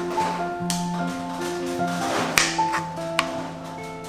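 Background music of soft, sustained melodic notes, with a few light taps heard over it about two-thirds of the way through.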